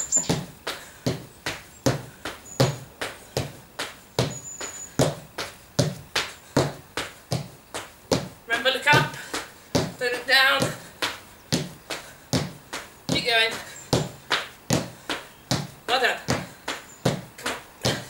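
Repeated thuds of feet landing during box jumps onto a plastic aerobic step and back down to the floor, a steady rhythm of about two to three landings a second.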